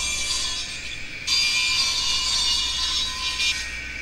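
A harsh, hissing, saw-like grinding from the music-video playback, coming through the room speakers. It gets louder about a second in and thins out near the end.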